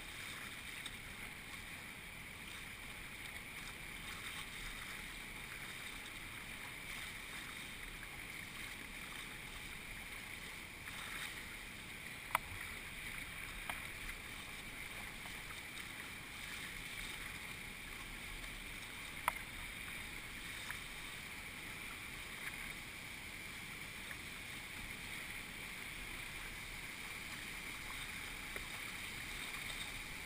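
Steady rush of whitewater around a kayak paddling through fast river current, with a couple of sharp knocks, one about twelve seconds in and one about nineteen seconds in.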